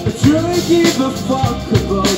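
Live rock band playing: a drum kit keeping a beat under guitar and a sung melody line.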